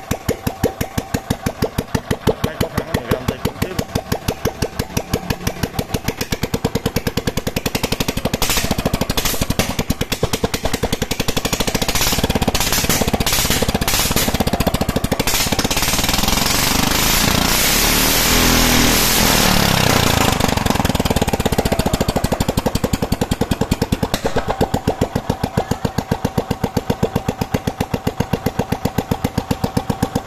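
Kawasaki FE350D 351 cc single-cylinder petrol engine running: idling with even, distinct firing beats, revved up by hand on the throttle lever for several seconds in the middle, then falling back to idle. It runs evenly and strongly, which the owner calls running just right.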